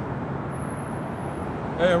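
Steady outdoor traffic noise, a continuous rumble with no single event standing out, and a thin high whine for about a second in the middle. A man's voice comes in near the end.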